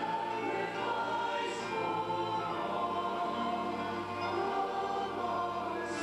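Church choir singing, the voices holding long notes.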